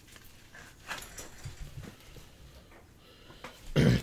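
Cardboard trading cards being handled and flipped over a desk: a faint rustle with scattered light clicks. Near the end a man's voice starts loudly.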